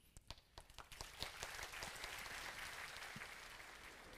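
Audience applauding: a few scattered claps at first, building about a second in into steady, fairly faint applause.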